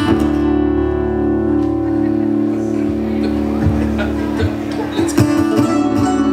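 Acoustic guitar and mandolin playing the opening of a song. A chord struck at the start rings on, then picking and strumming come back in about five seconds in.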